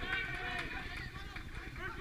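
Footballers shouting to each other across the pitch: several distant, overlapping voices calling, with a shout of "first" near the end.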